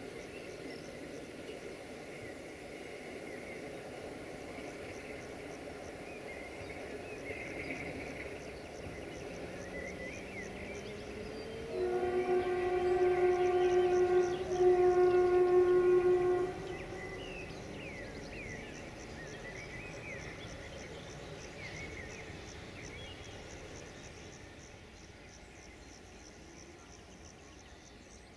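Romanian 060-DA diesel locomotive's horn sounding two long single-note blasts, the first about two and a half seconds and the second about two seconds, near the middle. Under it, the low rumble of the departing train fades.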